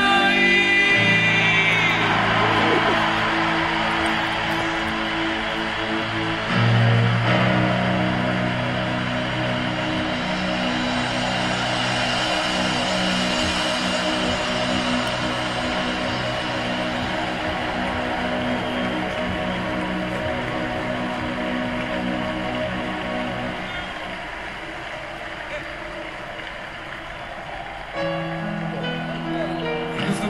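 Live rock concert audio played through cinema speakers: a male singer's held note with vibrato ends, then the band sustains long chords over a crowd cheering, the sound slowly fading toward the end.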